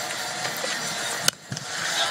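Cricket ground ambience from the broadcast, a steady hiss, broken by a single sharp crack of bat hitting ball about a second in. The sound drops away for a moment right after the crack.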